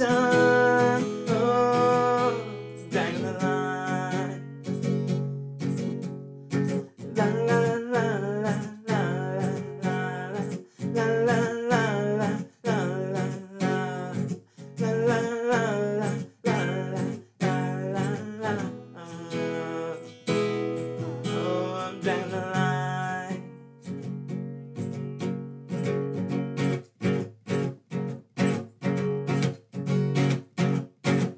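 A man singing while strumming an acoustic guitar. About 23 seconds in the singing stops and the guitar strumming carries on alone in a steady rhythm.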